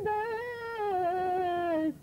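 A woman's voice chanting a line of Urdu verse in tarannum, the sung style of poetry recitation. She holds one long note without accompaniment that drifts slowly down in pitch and breaks off near the end.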